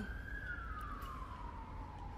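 Siren wailing: one slow tone that rises to its peak just after the start, then falls steadily.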